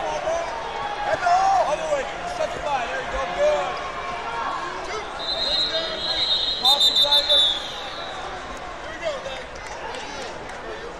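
A referee's pea whistle blown about five seconds in: one held shrill blast, then a quick run of short blasts, over the chatter and voices of a crowd in a large gym.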